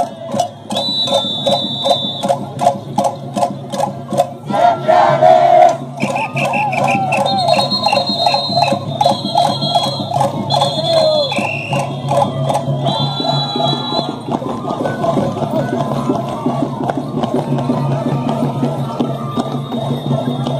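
Andean festive folk music: a steady drum beat, about four strokes a second, under a high melody, with voices singing.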